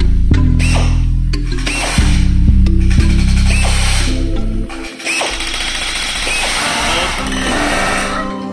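Background music with a heavy bass line. From about five seconds in, a pneumatic rivet gun makes a rapid rattle as it drives rivets into aluminium sheet.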